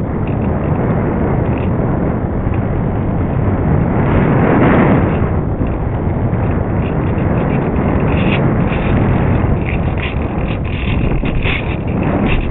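Airflow buffeting the microphone of a camera riding on a foam RC model plane in flight: a heavy, steady rushing noise, loudest about four to five seconds in. In the last few seconds, scattered clicks and knocks break through.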